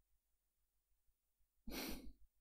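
Near silence, then near the end a short, breathy sigh from a man.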